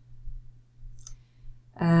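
A single faint computer mouse click about a second in, over a low steady hum.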